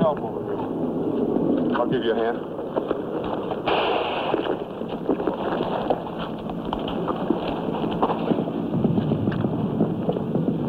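Indistinct voices over a steady rushing background noise, with scattered sharp clicks.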